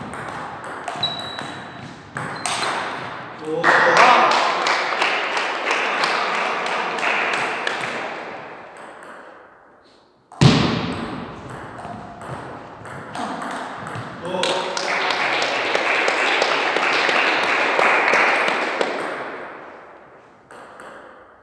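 Table tennis ball clicking off bats and the table in quick rallies, with voices in the hall. The sound comes in two stretches, the second starting suddenly about ten seconds in.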